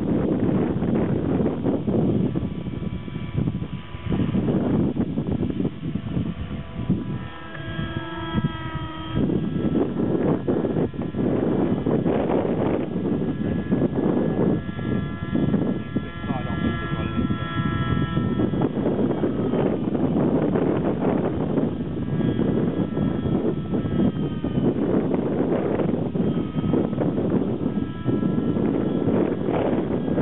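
Align T-Rex 600 LE nitro RC helicopter flying, its HZ55 glow engine and rotors giving a whine whose pitch rises and falls as it manoeuvres, over heavy wind noise on the microphone.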